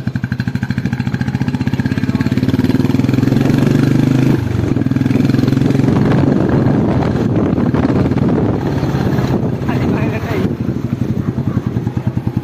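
Royal Enfield Classic 350's single-cylinder engine running as the bike rides along, a steady rapid pulse. The engine note climbs over the first few seconds, breaks off sharply about four seconds in, then runs on.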